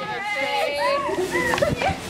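Several high, young voices chattering over one another, with a steady hiss of a garden hose spraying water beneath.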